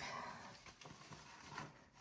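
Near quiet, with a few faint scuffs and rustles of people moving on foot through a narrow rock passage.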